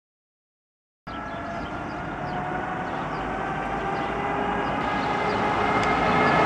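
Silence until about a second in, then cars approaching along a road with their engines growing steadily louder and a steady whine over the engine sound.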